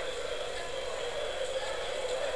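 Steady background whir and hiss, even throughout, with no distinct key clicks standing out.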